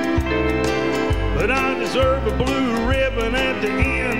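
Live country band playing an instrumental lead-in, with drums keeping a steady beat. From about a second in, a lead instrument plays a wavering, bending melody line.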